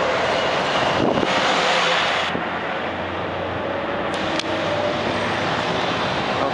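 Street traffic with a city bus driving past close by, its engine running. About a second in, a rush of hiss starts and cuts off sharply a little over two seconds in.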